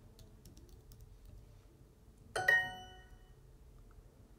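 Faint computer-keyboard typing, a scatter of key clicks in the first second and a half, then a bright electronic chime from the Duolingo app about two and a half seconds in that rings and fades over about a second: the sound the app plays when an answer is checked.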